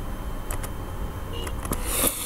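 Steady low background hum of room noise, such as a fan or air conditioner, with a few faint clicks about half a second in and again around a second and a half in.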